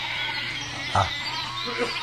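Sheep bleating, a long quavering call.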